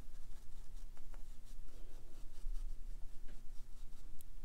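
Watercolour brush bristles stroking wet paint across watercolour paper: soft, scratchy brushing with a few faint ticks, over a steady low hum.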